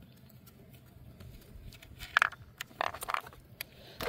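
A few short metallic clicks and scrapes, about two and three seconds in, as a loose, corroded battery cable clamp is worked off its battery post.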